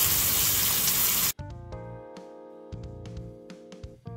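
Flour-dusted oxtails sizzling as they sear in a hot enamelled cast-iron pot. About a second in, this cuts off suddenly to quieter, soft music with held notes.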